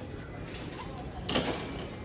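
A short clatter, about one and a half seconds in, as a glass liqueur bottle is set down in a wire shopping trolley, over a steady low supermarket hum.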